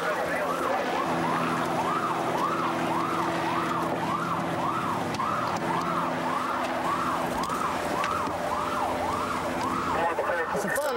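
Electronic emergency-vehicle siren sweeping up and down about twice a second, with a steady low hum underneath.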